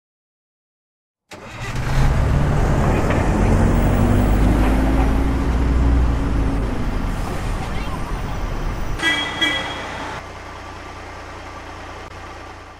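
Bus sound effect for an animated logo: a heavy engine starts about a second in and runs loudly, its pitch rising slowly as it pulls away. About nine seconds in comes a short horn toot, after which the engine settles to a quieter steady hum.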